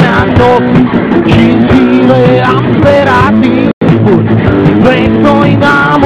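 Rock band playing live: guitar and drums. A very short dropout cuts the sound a little before four seconds in.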